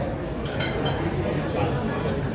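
One clink of tableware about half a second in, ringing briefly, over background voices.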